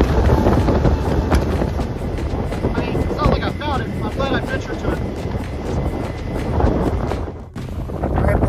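Wind buffeting the microphone over the rush and slap of choppy water against an inflatable boat under way, loud and steady. A few short wavering high chirps come about halfway through, and the sound cuts off suddenly shortly before the end.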